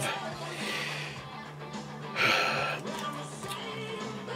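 Faint background music during a pause, with a brief soft hiss-like noise about two seconds in.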